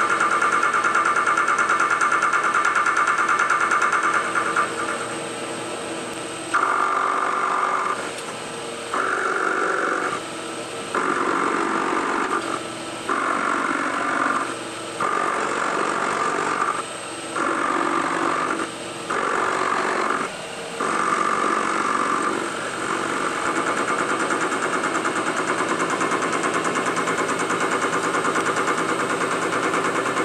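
Carbide-tipped boring bar on a milling machine spindle running in reverse, its tip knocking against the block's corner on every turn as it sweeps a radius: a steady, rapid cutting chatter. It runs steadily at first, then stops and starts in about eight short spells as the table is fed in, then runs steadily again through the last third.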